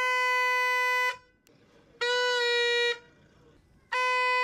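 Plastic vuvuzela-style horn blown in three steady one-note blasts, each about a second long. The third begins at the very end. In the warning code described, three blasts are the signal for incoming mortar fire.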